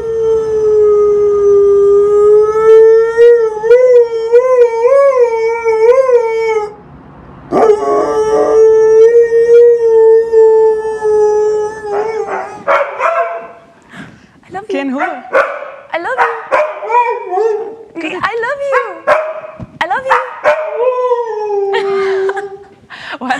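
Siberian husky howling on cue: one long howl that wavers up and down in pitch towards its end, a brief pause, a second long steady howl, then a run of shorter, choppier howls.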